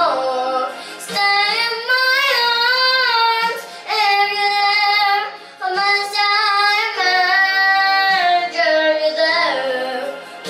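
A young girl singing a slow ballad solo, in long held phrases with vibrato, pausing briefly between phrases.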